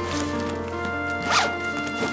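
A suitcase zipper pulled once in a short stroke, about a second and a half in, over background music with held notes.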